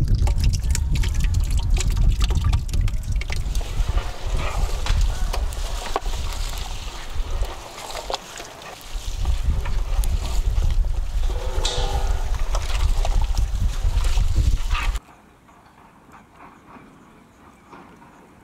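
Thick curd poured from a steel plate into a large pot of marinated mutton, then wet squelching and sloshing as the meat and curd are mixed by hand, with a heavy low rumble underneath. The sound cuts off suddenly about fifteen seconds in.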